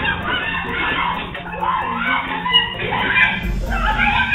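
A rooster crowing and clucking over background music.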